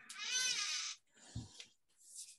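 One drawn-out, high-pitched call or squeak lasting just under a second, its pitch rising and then falling, followed by a soft thump about a second and a half in.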